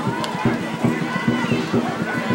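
Several people's voices talking and calling out over one another without a break, from people gathered around a running race.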